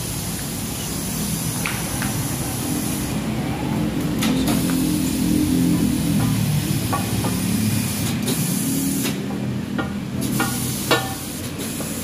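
Tyre-shop work noise: a steady hiss over a low hum, with a few short metal clinks as a wheel rim is handled on a tyre changer.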